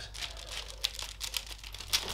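Expanded honeycomb kraft packing paper (Ranpak) crinkling faintly as a hand holds it pulled tight around a wrapped pot, with a couple of sharper crackles.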